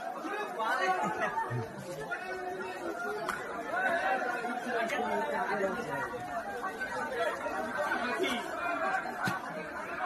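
Several people talking over one another, unintelligible chatter from a group of onlookers, with a few faint clicks.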